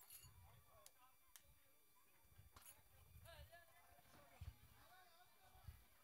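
Near silence, with faint voices in the background and a few soft low thumps.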